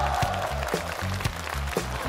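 Dance music with a steady beat and heavy bass, about two beats a second.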